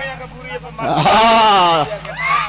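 A man's voice through the stage PA holding one long, wavering drawn-out vocal sound for about a second, starting just before the middle.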